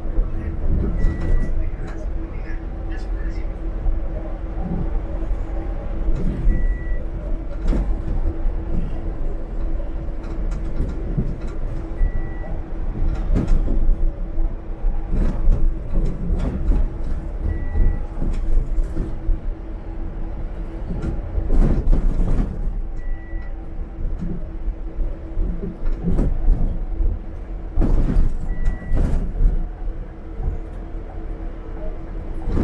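Articulated city bus running on the road, heard from the driver's cab: low engine and road rumble with a steady hum, and frequent rattles and knocks from the bus body. A short high dashboard beep repeats about every five and a half seconds.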